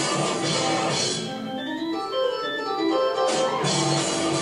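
Live rock band playing. About a second in the drums and cymbals drop out, leaving held keyboard chords with a rising slide, and the full band comes back in shortly before the end.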